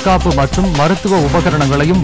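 A man's voice reading in a news-bulletin style over background music with a sharp, repeated percussive beat.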